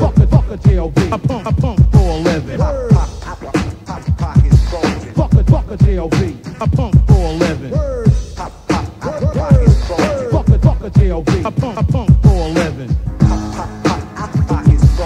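Hip hop track played from a cassette tape: a man rapping over a steady drum beat with heavy bass.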